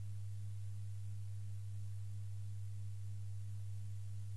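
Steady low electrical hum, one deep tone with a fainter higher tone pulsing about three times a second over light hiss.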